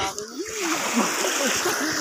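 Water splashing and churning as a fishing net is hauled in by hand, with voices over it.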